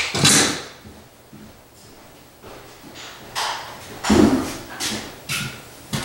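Brief scrapes and knocks from a pole sander with a round sanding pad being handled and picked up. There is a short scrape at the start, a quiet stretch, then a cluster of knocks and scuffs in the second half.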